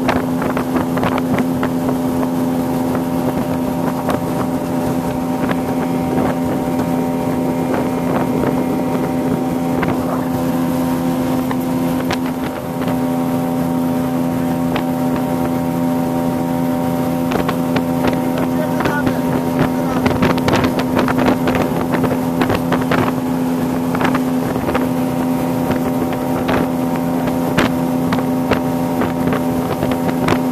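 A boat's engine running steadily at one pitch while under way, with irregular splashes of water against the hull.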